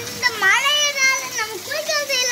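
A young child's high voice in long, drawn-out sounds that glide up and down in pitch.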